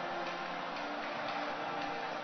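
Soft background music with sustained chords and a light ticking beat about twice a second.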